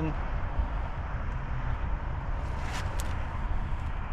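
Steady low rumble of wind buffeting the microphone, with a couple of short plastic clicks about three seconds in as the tabs of interlocking plastic deck-mat tiles are pressed into place.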